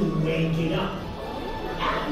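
A man's voice in a theatrical, drawn-out delivery, held at one pitch for most of the first second, over background music.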